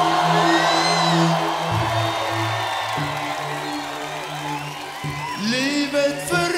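Live band holding sustained chords while a large crowd cheers, with scattered whoops and whistles in the first second or so. A voice starts singing near the end.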